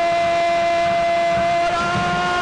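Stadium air horns blowing long, steady blasts over crowd noise as fans celebrate a goal, with a second, higher horn joining near the end.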